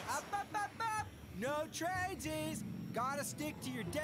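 Cartoon character voices speaking quietly, with a low steady rushing noise under them in the second half.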